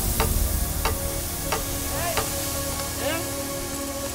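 Steady spraying hiss of a snowmaking gun blowing water and air, with faint background music and a regular light ticking underneath.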